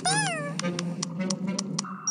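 A cartoon Vegimal's squeaky, meow-like call that rises and falls, followed by a quick run of about six short clicks over a steady low hum.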